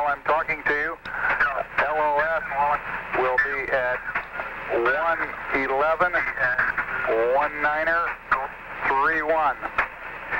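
Man's voice over a narrow-band radio link, talking in short phrases throughout: Apollo air-to-ground radio transmission, thin and hard to make out.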